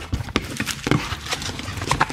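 Cardboard packaging and a fabric carrying bag being handled as the bag is lifted out of its box: a string of irregular taps and knocks with rustling between them.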